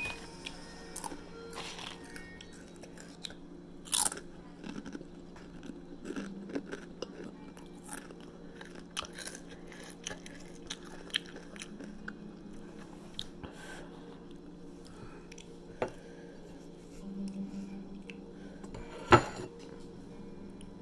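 Close-up crunchy chewing of nacho-cheese Doritos tortilla chips, with crisp crackles and clicks throughout over a steady low hum. A sharp knock comes near the end.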